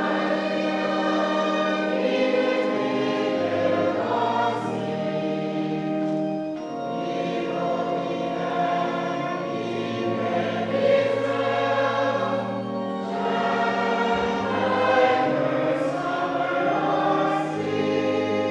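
Church choir singing a hymn together, with long held low notes sounding underneath the voices.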